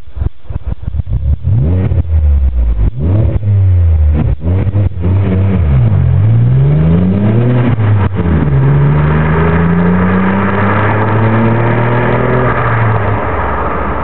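Vauxhall Vectra C 3.2 GSi's V6 engine through a Blue Flame aftermarket exhaust, revved and then accelerating hard: the pitch climbs, drops at a gear change about eight seconds in, and climbs again before fading near the end.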